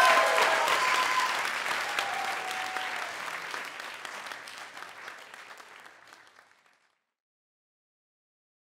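Audience applauding, with a few cheers in the first three seconds; the clapping gradually fades and stops about seven seconds in.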